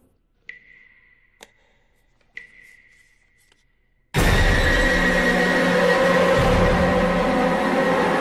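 Horror-trailer sound design. Over near silence come two soft, ringing high tones that fade away and a faint tick. About four seconds in, a sudden, loud, sustained wall of harsh, dense sound with a shrill tone in it cuts in and holds.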